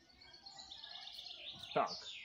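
A songbird singing: a thin, high, wavering run of song lasting about a second and a half.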